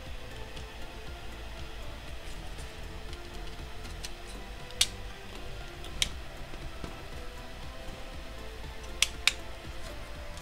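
Quiet background music, with a few sharp clicks of small plastic model-kit parts knocking together as a cover piece is fitted and pressed onto a wing blade: one about five seconds in, one at six, and two close together near nine seconds.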